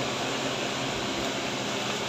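Steady, even hiss of background room noise, with no distinct events.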